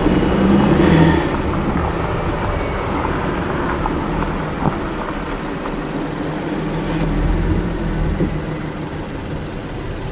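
Volkswagen Atlas SUV's 3.6 L VR6 engine, fitted with a resonator delete, running steadily as the vehicle drives off-road, with a couple of light knocks.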